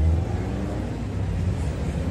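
Low rumble of outdoor street noise, loudest at the start and easing off a little.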